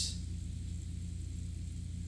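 A pause in the talking: only a steady low hum with a faint hiss underneath, the background noise of the recording.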